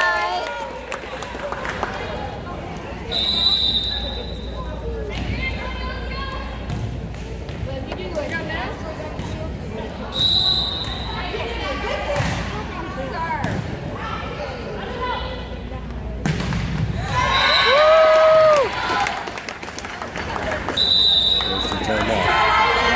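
Volleyball match in a gymnasium: spectators calling out and shouting, a referee's whistle blown in several short, steady blasts, and thuds of the ball being played.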